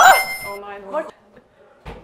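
Women's voices shouting and cheering "Ja!" at the start, trailing off within about a second, then a single short knock near the end.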